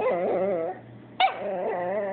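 Chihuahua 'talking': two drawn-out whining, grumbling vocalizations that waver up and down in pitch, the first in the opening part and the second starting a little past a second in, a complaining sound rather than a bark.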